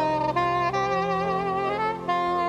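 Solo single-reed woodwind, saxophone-like, playing a slow melody of held notes that change every half second or so, over a soft sustained accompaniment.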